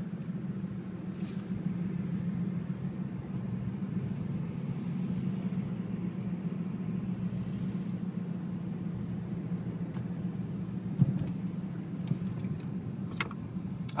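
A car driving on a city road, heard from inside: a steady low rumble of engine and tyres, with one brief knock about eleven seconds in.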